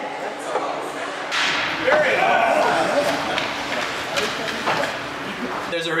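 Crowd in an indoor hockey arena cheering and shouting after a goal. It swells about a second in, with a few sharp knocks mixed in.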